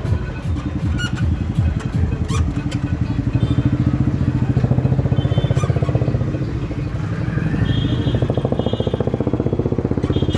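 A small vehicle engine runs close by with a steady, rapid chug. A few short high-pitched tones sound about eight seconds in.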